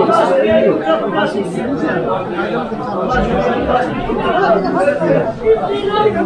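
Market crowd chatter: many voices talking at once among shoppers and stallholders, steady throughout, with no single voice standing out.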